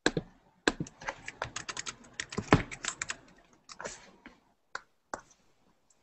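Typing on a computer keyboard: a fast run of keystrokes over the first few seconds, then a few scattered key presses.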